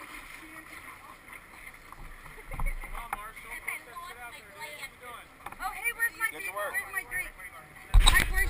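Indistinct chatter of people in a river, busier over the second half, over water lapping against the raft, with a single knock about two and a half seconds in.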